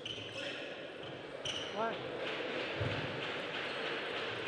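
Celluloid-style table tennis ball bouncing in short sharp clicks as a player readies his serve, in a large hall with a steady room murmur. A brief squeak, from a shoe on the court floor, comes about two seconds in.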